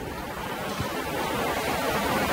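Steady background hiss and room noise with no voice, growing slightly louder.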